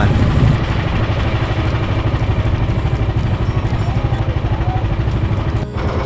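Engine of a motorized outrigger boat (bangka) running steadily under way, a fast, even low rumble, with water rushing along the hull and outrigger. The sound drops out briefly near the end.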